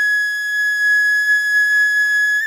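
Background music: a single long flute note held steady at one pitch.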